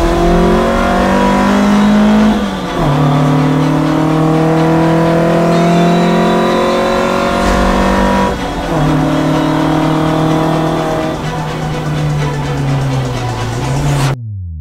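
VW Golf Mk1 GTI's four-cylinder engine accelerating hard through the gears, heard from inside the cabin: the engine note climbs steadily, drops sharply with an upshift about two and a half seconds in and again about eight and a half seconds in, then climbs again.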